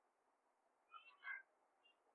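Near silence: room tone, with a faint, short chirp-like sound a little over a second in.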